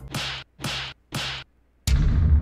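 Three quick swishing whooshes about half a second apart, then a deep bass boom that starts suddenly near the end.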